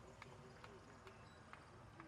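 Faint hoofbeats of a horse moving over dirt arena footing, a soft clop about twice a second.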